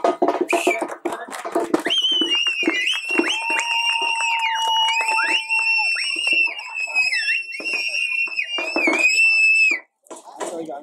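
Crowd shouting, then shrill whistling held for several seconds with dips in pitch, over scattered sharp cracks; it cuts off suddenly just before the end.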